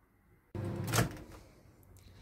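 Microwave oven door being shut, with a sharp latch click about a second in.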